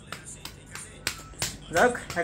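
Several sharp clicks, about three a second, then a person's voice starts near the end.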